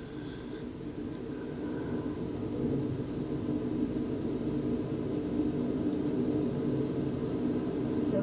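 Steady low hum and rumble that slowly grows louder.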